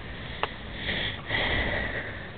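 A boxer dog's breathy huffs and snuffles close to the microphone during rough play: a short click, then two breathy bursts in the second half.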